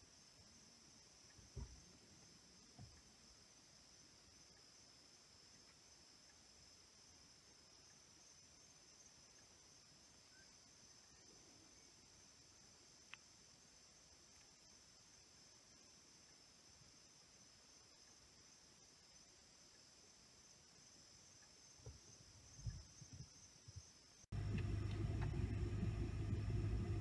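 Faint steady high-pitched chirring of night insects, with a few soft handling bumps. Near the end a louder steady low hum cuts in suddenly.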